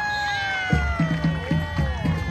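A long, high sliding tone that falls slowly in pitch, joined about two-thirds of a second in by a parade marching band's drums beating a steady rhythm.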